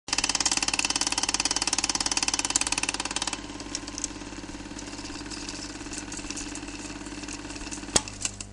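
Film projector sound effect: a loud, fast, even clatter for about three seconds, then a quieter steady run with scattered clicks and crackles, and a sharp click at the very end.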